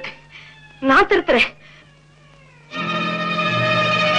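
Film soundtrack: a short line of dialogue about a second in, followed by faint sliding tones. Near the end, a loud orchestral background score comes in, with sustained strings holding a chord.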